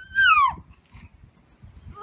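A cat meowing once, a short high call that falls steadily in pitch.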